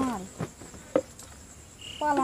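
Crickets trilling steadily at a high pitch, with a voice trailing off at the very start. Two short knocks come about half a second and a second in.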